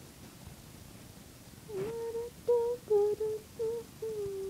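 A woman humming a tune with her mouth closed: a few short held notes that begin a little before halfway and move between two or three pitches.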